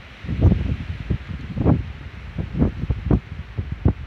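Wind buffeting a phone's microphone in irregular low gusts, strongest about half a second in and again near the middle.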